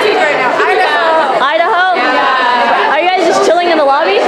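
Loud chatter of several voices talking over one another, with no single clear speaker.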